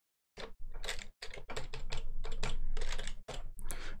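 Quick run of key presses on a computer keyboard, about five clicks a second, starting a third of a second in: keystrokes moving through a file in the Vim editor, over a faint low hum.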